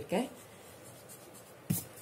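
Eraser rubbing over pencil lines on drawing paper: a faint, steady scrubbing, broken by one short sharp sound about three-quarters of the way through.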